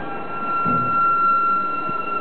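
A steady, high electronic tone that sets in at once and holds, with a fainter, higher tone above it, over a rumbling background noise.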